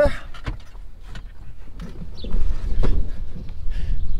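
Knocks and clicks of a pickup truck door opening and someone climbing out of the cab. From about halfway, wind buffets the microphone, with a few more knocks.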